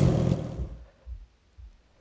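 Low buzzing hum of a hovering hummingbird's wings, fading out within the first second and leaving near quiet.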